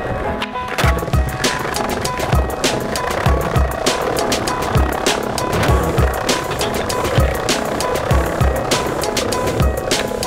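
Hip-hop beat that comes in about a second in, with a kick drum about twice a second and sharp hi-hat strokes. Under it runs the noise of skateboard wheels rolling over pavement.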